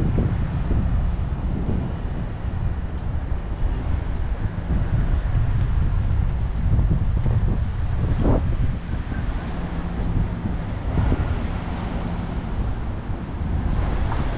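Wind buffeting the microphone in a steady low rumble, over the sound of street traffic passing by.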